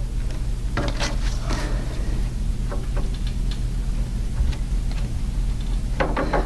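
Pencil making short marks on paper at a desk, with scattered light clicks and scratches, over a steady low electrical hum.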